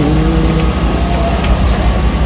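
A man's singing voice holds the song's last note, sliding down slightly and ending less than a second in. A steady low rumble of background noise runs throughout.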